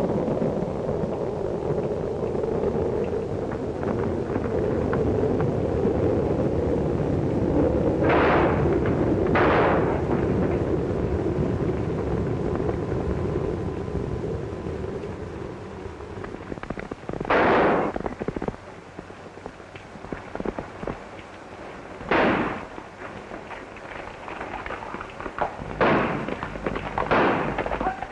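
Gunshots on an old film soundtrack: two shots about a second apart roughly a third of the way in, single shots a few seconds apart after the middle, and several more close together near the end, each with a short echo. A steady, noisy rumble fills the first half.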